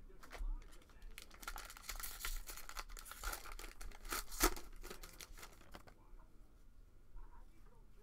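The wrapper of a Panini Prestige football card cello pack being torn open and crinkled by hand: a dense run of crackling rips, loudest about four and a half seconds in, dying down after about six seconds.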